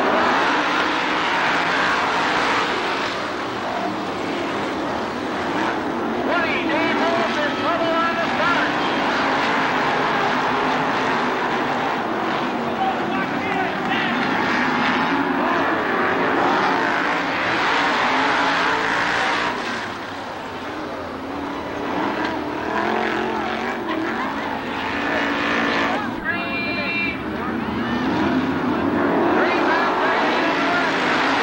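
A pack of winged sprint cars racing on a dirt oval, their V8 engines running hard in a continuous roar whose pitch wavers up and down as the cars pass and drop back.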